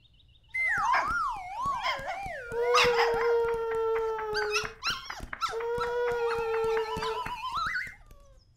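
Cartoon dog howling: a wavering, wobbling howl that settles into two long held notes, the second ending in a rising glide.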